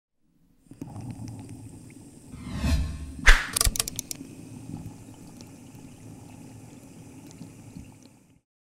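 Logo-intro sound effects: a rising whoosh about two and a half seconds in, a sharp hit at about three and a half seconds followed by a quick run of glittery clicks, then a low lingering tail that fades out at the end.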